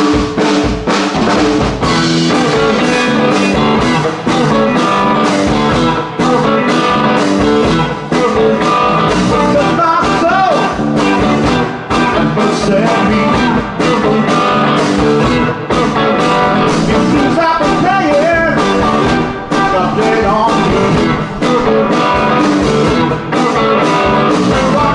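Live blues-rock band of electric guitar, electric bass and drum kit, coming in all at once at full volume and playing on with a steady beat.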